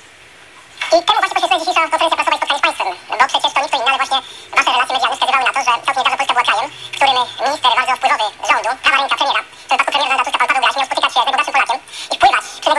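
A person talking, starting about a second in, with short pauses. The voice sounds thin and telephone-like, with no low end.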